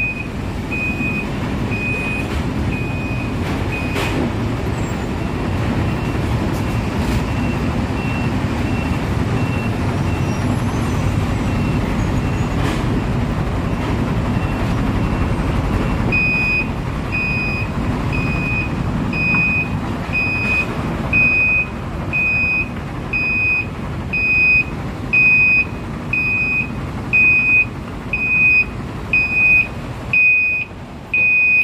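A dump truck's reversing alarm beeping steadily, about one and a half beeps a second, fading for a while and coming back loud about halfway through, over a continuous low rumble of heavy machinery.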